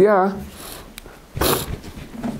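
A man's voice in a lecture, drawing out the end of a word, then a pause broken by a short breathy hiss about a second and a half in.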